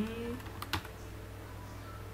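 A man's short hummed 'hmm', rising in pitch, at the very start, then a single sharp click about three-quarters of a second in, over a steady low hum.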